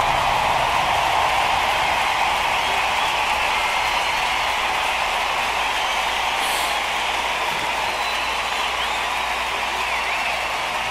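Large stadium concert crowd cheering and screaming, a steady roar of many voices that fades slightly, with a few faint whistles.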